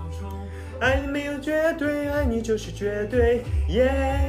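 Pop song with guitar accompaniment and a steady bass line. A male voice starts singing the melody about a second in.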